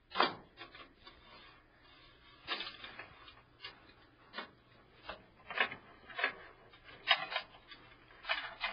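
PC power supply cables and their plastic drive connectors being handled and pulled through a computer case: irregular light clicks and rubbing, with a sharp click right at the start and another about seven seconds in.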